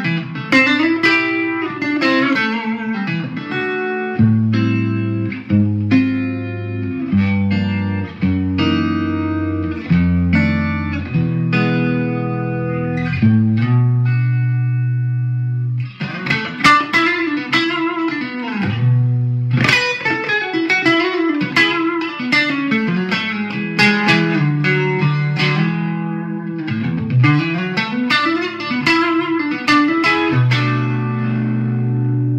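Electric guitar, a Fender American Elite Telecaster Thinline, played through a Marshall DSL 100H on its classic gain channel in crunch mode and a Fender Bassbreaker 45 in stereo, giving a crunchy overdriven tone with chorus, delay and spring reverb. Single-note lead lines with string bends and a long held note about halfway through, with a short break just after it.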